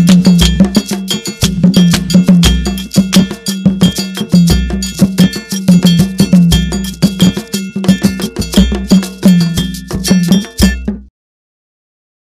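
West African percussion dominated by rapid metal bell strikes, ringing and clanging, over regular low drum beats. The music stops abruptly about eleven seconds in.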